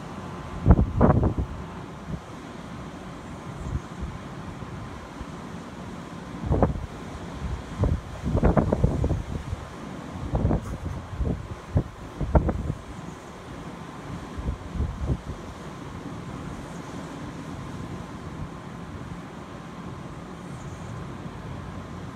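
Wind gusting against the microphone in irregular low buffets, heaviest in the first half and fading out after about fifteen seconds, over a steady background rush.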